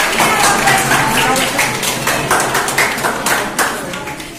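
Audience applauding: dense, irregular clapping from many hands, with voices mixed in.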